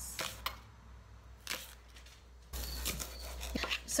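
Chef's knife slicing scallion whites on a plastic cutting mat: a few separate knife strikes in the first two seconds. After that comes rustling handling noise with small clicks as the slices are gathered up by hand.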